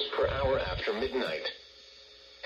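NOAA Weather Radio forecast voice playing from the small speaker of a RadioShack 12-522 weather radio, breaking off about a second and a half in for a short pause.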